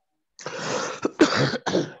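A person laughing in three breathy bursts, starting about half a second in.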